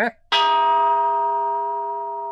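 A single sudden metallic strike with a bell-like ring. Its several tones ring on and fade slowly over about two and a half seconds.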